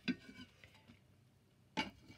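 Quiet handling sounds of dyed paper and ceramic: a light clink at the start and one sharp knock near the end, as the paper is moved about on a ceramic plate beside a kitchen tile.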